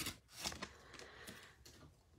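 Faint rustling of a torn-open foil trading-card wrapper as the stack of cards is slid out of it, with a few soft scrapes in the first second and a half.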